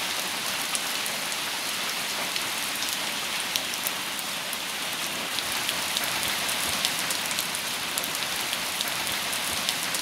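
Steady rain falling on trees and leaves: a continuous hiss with scattered single drops ticking sharply through it.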